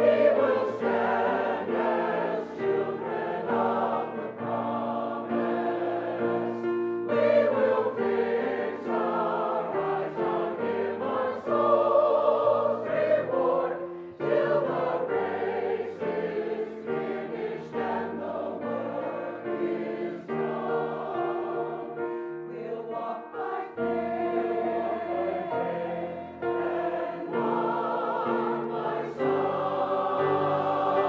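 A large church choir singing, many voices together, continuing without a break.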